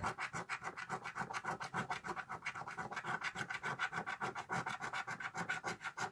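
Fingernail scratching the silver coating off a paper scratch card in quick, even back-and-forth strokes, several a second.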